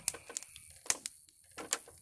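Wood fire in a metal fire pit crackling, with a handful of sharp, irregular pops, the loudest about a second in.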